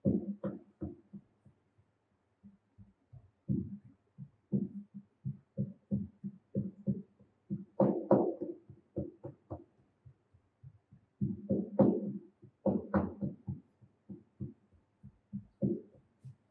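Hand rammer packing moulding sand into a wooden cope box: a run of dull thuds, about two or three a second, coming in uneven bursts with a few short pauses.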